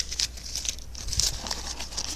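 A folded paper slip being unfolded by hand: quick, irregular crinkling and rustling of paper.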